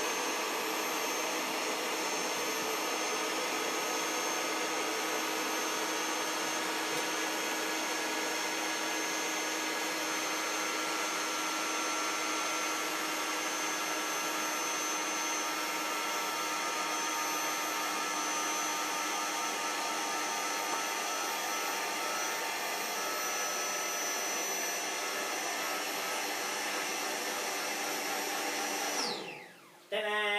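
Built-in electric air pump of an EZ Bed self-inflating air bed running steadily as it inflates the mattress. Near the end it switches off, its pitch falling as it spins down.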